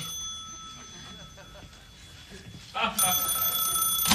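A telephone bell rings once, starting about three seconds in and lasting a little over a second, after a quiet gap in which the previous ring fades out.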